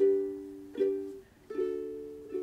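Ukulele chords strummed, three strums about three-quarters of a second apart, each left to ring and fade, with a brief near-silent gap before the third.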